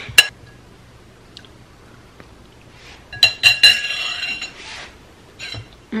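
Metal fork clinking against a ceramic bowl of pasta. There is one sharp clink just after the start, then a quick run of ringing clinks about three seconds in.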